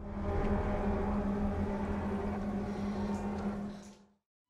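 A low, steady drone from the film's soundtrack with one held tone over a low rumble, fading out near the end.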